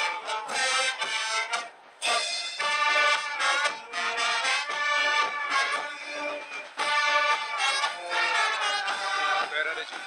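Military brass band with sousaphones, trombones and saxophones playing a march on parade, in sustained held notes. The sound nearly drops out just before two seconds in, then comes back abruptly.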